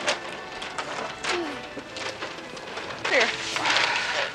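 Background music with paper shopping bags and gift-wrapped packages rustling and knocking as they are handled, and brief low voices near the end.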